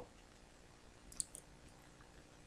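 Two quick computer-mouse clicks about a second in, the first louder, against near-silent room tone.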